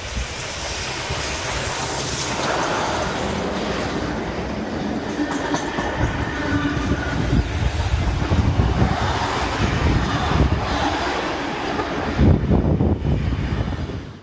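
NSW 36 class steam locomotive 3642 and its red heritage passenger carriages running past along the platform. A steady rail rumble builds, and from about halfway through the wheels clatter over the rail joints.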